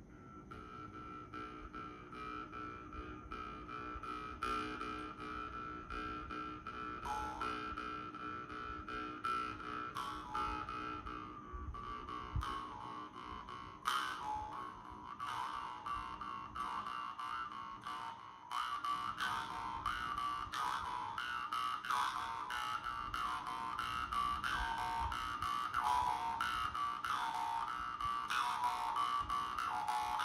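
Vietnamese dan moi jaw harps playing a steady buzzing drone with a singing overtone melody above it. One harp plays alone at first and a second joins, and in the last third the sound gets louder and the overtones shift up and down quickly.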